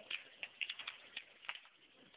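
Balls clicking and clattering along the plastic tracks of a switched-on toy marble run: about a dozen light, irregular clicks, bunched most closely in the middle.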